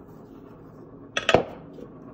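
A quick clink of glass, two or three sharp taps close together about a second in, as a small glass spice jar knocks against hard kitchenware; otherwise only quiet room tone.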